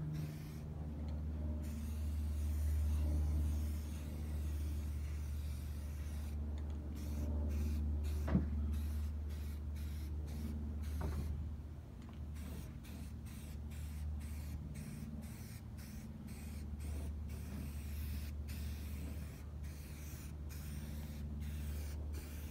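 Aerosol can of matte spray paint hissing in bursts with short breaks, over a steady low hum, with two small clicks partway through.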